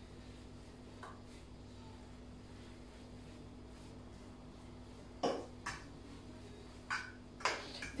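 A metal utensil clinks against a frying pan four times in the second half as funchoza noodles are stirred with the meat-and-vegetable filling. A low steady hum runs underneath.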